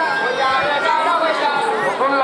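Several voices at once, one of them holding a long note that slowly falls in pitch.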